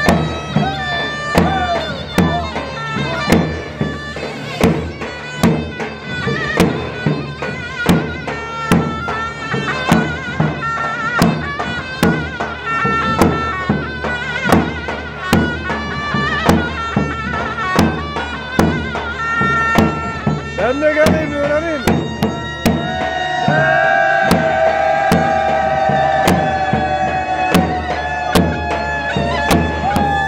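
Turkish folk dance music for a halay: a reedy wind instrument plays an ornamented melody over a steady drum beat. Over the last several seconds it holds one long high note.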